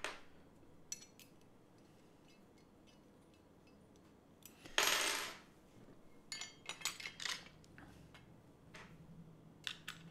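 Small metal clicks and clinks as a metal camera L-bracket and its magnetic Allen key are handled and fitted onto a camera body, with a brief louder rustling scrape about halfway through and a cluster of clicks soon after.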